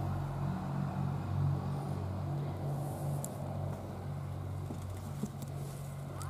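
A steady low motor hum, slowly wavering in strength, like an engine running at a distance.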